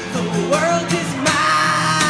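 A man singing live to his own strummed acoustic guitar, his voice rising about half a second in and then holding long notes.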